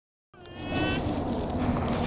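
A young Newfoundland puppy's high whine, about half a second long just after the start, over a low steady hum.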